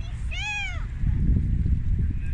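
Wind buffeting the microphone, a heavy uneven low rumble that gets louder after about a second. About half a second in, one short high call rises and falls in pitch, meow-like.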